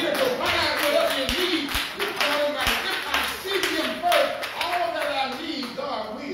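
Church congregation responding with overlapping voices and handclaps.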